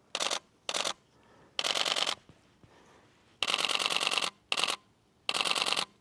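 Canon DSLR shutter firing in rapid continuous bursts: six bursts of fast clicking, the longest about a second near the middle. The camera is in high-speed continuous drive, catching the model as she moves.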